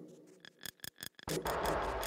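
Soloed track playback from a song's multitrack: a short run of quick, dry percussion ticks about half a second in, then a soft white-noise atmosphere layer fading in near the end.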